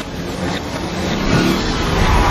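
Cartoon car engine sound effect, a noisy rush that grows louder as the vehicle speeds along.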